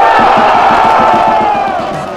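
Stadium crowd cheering and shouting at a goal, loud and sustained, fading near the end, over background music with a steady beat.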